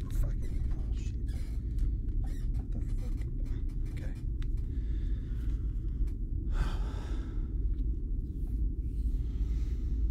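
A steady low rumbling drone, with small scattered clicks and knocks in the first few seconds and a short breathy rush of noise about seven seconds in.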